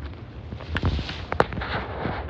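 Leafy branches of a freshly cut bamboo pole rustling and crackling as it is pulled along and laid on leaf-littered ground, with a few sharp clicks around the middle.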